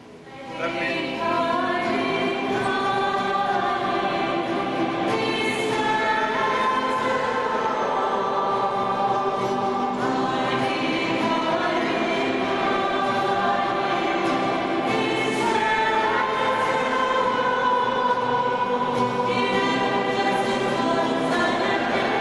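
A small group of women singing a worship song together with acoustic guitar accompaniment, coming in about half a second in after a brief quiet moment.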